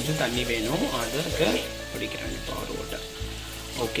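A person's voice over background music, loudest in the first second and a half. Under it, faint sizzling of stuffed brinjal masala frying in the kadai.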